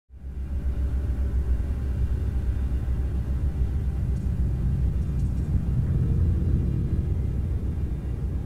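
A steady low rumble that starts right at the beginning and holds an even level.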